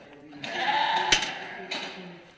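A Dorper sheep bleats once, starting about half a second in and lasting about a second. A sharp click cuts through the bleat partway.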